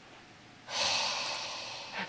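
A person breathing audibly close to the microphone: one long, hissy breath that starts suddenly under a second in and fades away over about a second.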